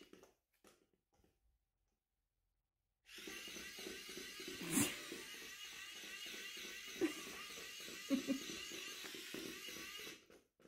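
Small electric motor of a battery-powered Catch Me Kitty toy mouse whirring with a wavering high whine. It stops right at the start, falls silent for about three seconds, then runs again. Sharp knocks come about halfway through and again about two seconds later.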